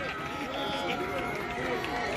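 Several voices shouting and cheering at once, with drawn-out calls overlapping one another.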